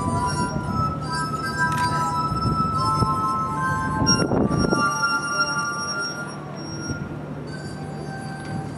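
Glass harp: wet fingertips rubbing the rims of water-tuned stemmed glasses, giving pure, singing tones. A sequence of held notes changes pitch every second or so, with several notes overlapping.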